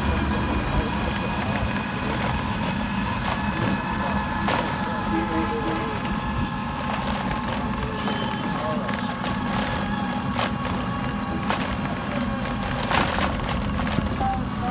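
Steady vehicle running noise on a street: a constant low hum with a thin whine, a few short knocks, and faint voices.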